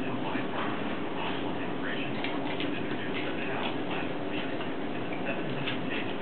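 A dog licking avocado off a baby: soft, irregular wet clicks over a steady background hiss.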